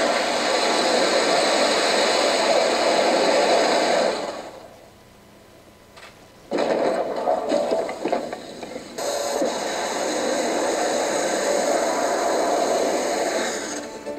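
Rocket engine exhaust and the fire of a crashed MOMO sounding rocket, heard from launch footage played back in a room. It is a loud, steady roar for about four seconds, falls away, then returns suddenly and runs on.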